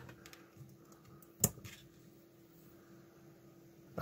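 Small clicks and taps of a printed circuit board and soldering tools being handled, with one sharper click about one and a half seconds in, over a faint steady hum.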